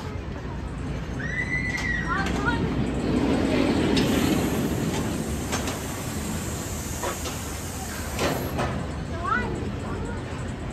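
S&S El Loco steel roller coaster train running along its track overhead: a rumble that swells to its loudest about four seconds in and then eases off, with a few sharp clacks. Riders' high screams rise and fall near the start and again near the end.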